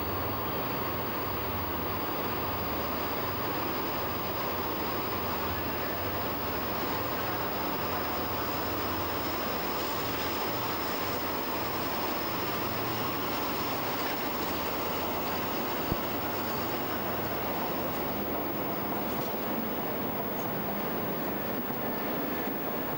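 A Talgo train hauled by a RENFE class 353 diesel locomotive running. There is a steady low engine drone under rolling noise, and a thin high whine that rises slightly in pitch. A single sharp click comes about two-thirds of the way through.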